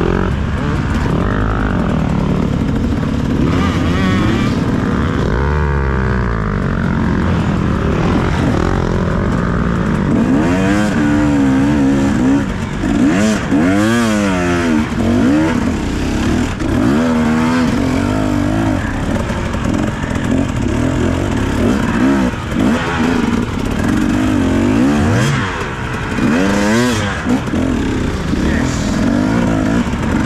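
2017 KTM 250 EXC two-stroke enduro engine being ridden hard, its pitch climbing and dropping again and again as the throttle is opened and shut through tight dirt turns.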